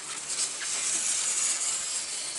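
Polystyrene foam lid rubbing and scraping as it is slid off a foam incubator box: a steady, hissing rub.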